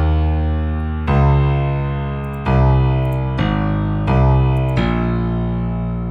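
The Scaler plugin's built-in piano plays a slow sequence of six held low notes, one after another, each lasting about a second. The notes are the root notes taken from a piano loop, played so that Scaler can detect their scale.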